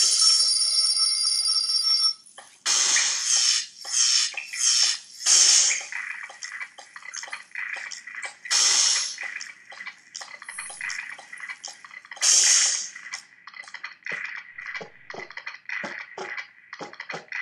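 A ringing tone made of several steady pitches that cuts off about two seconds in. It is followed by a run of irregular bursts of hissing noise, some short and some lasting about a second.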